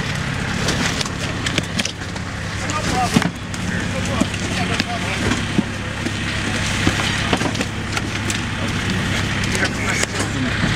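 A vehicle engine idling steadily in the background, with indistinct chatter of people nearby and scattered small knocks of handling.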